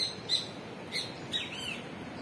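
A bird calling in short, high chirps, four or five in two seconds, the last a rising-and-falling arched note, over a steady outdoor background hiss.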